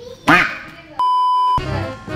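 A short, loud voice-like squeak, then a steady high-pitched electronic beep about half a second long that starts and stops abruptly, an added bleep sound effect; background music comes back in after it.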